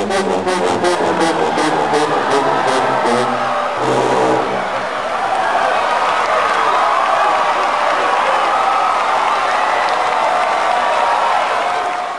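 A marching-band sousaphone section plays a loud, low brass passage that ends about four seconds in. A crowd in the arena cheers and applauds after it.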